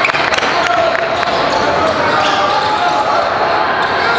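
Basketballs bouncing on a hardwood court, many short knocks, over a steady mix of overlapping voices, carrying the echo of a large sports hall.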